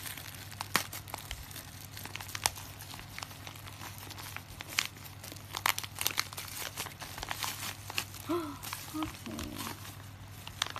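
Thin plastic packaging crinkling and rustling as it is unwrapped and handled, with many sharp crackles over a low steady hum. A few short pitched sounds come near the end.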